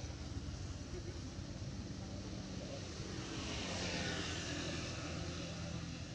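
Engine drone that swells about three to four seconds in and eases off again, like a motor passing by.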